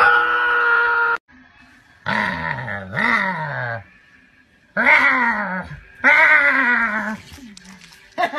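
A dog vocalising in four drawn-out, wavering grumbling howls, each falling in pitch.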